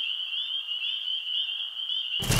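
Night-time ambience sound effect: a steady, high-pitched chorus of trilling frogs.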